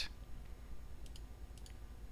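A few faint computer mouse clicks about a second in, as a toggle switch is clicked in a logic-gate simulator, over a low steady hum.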